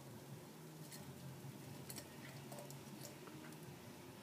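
A few faint, scattered clicks of metal forks and a coin touching as they are fitted together over the rim of a glass, over a low steady hum.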